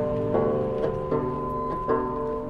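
Open-back banjo picking a slow folk tune, about four plucked notes, with a long held high note from a musical saw sounding over them from about half a second in.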